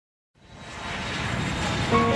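Silence, then a rushing noise that fades in and grows steadily louder from about a third of a second in: the swell that opens a pop song's track. Held musical notes come in right at the end.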